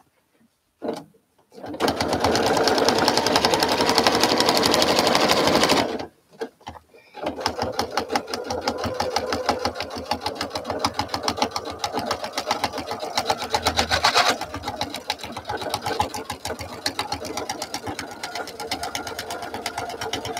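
Domestic sewing machine stitching free-motion through a quilt top and batting with the feed dogs lowered. It runs fast and even for a few seconds, stops briefly about six seconds in, then starts again at a slower, less even pace that holds to the end.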